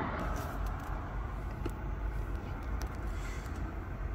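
Steady low vehicle rumble heard from inside a truck cab, with a couple of faint clicks.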